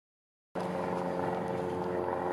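Car engine running steadily as a sedan rolls slowly across a parking lot, a constant hum. The sound starts abruptly about half a second in.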